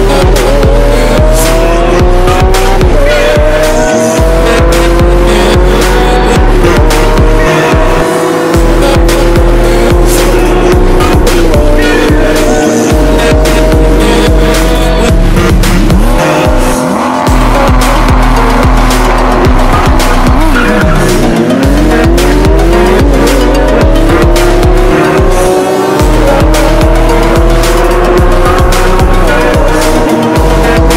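Lamborghini Aventador SVJ naturally aspirated V12 engines accelerating hard down a drag strip, their pitch climbing again and again through the gearshifts. This is laid over background music with a heavy bass beat.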